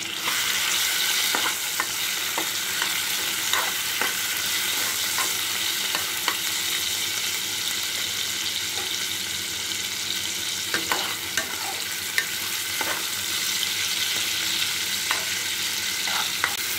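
Prawns and cubed potatoes sizzling steadily in hot oil in a kadai, with a metal spoon scraping and clicking against the pan now and then as they are stirred.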